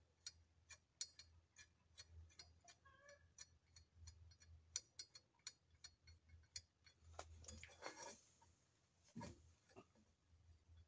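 Faint, irregular small metal clicks, a few a second, as the handlebar stem's faceplate bolts are threaded in lightly by hand, with a soft knock near the end over a low hum.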